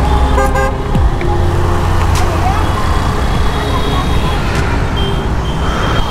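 Busy city road traffic: a steady rumble of passing motor vehicles with horns honking and people's voices around.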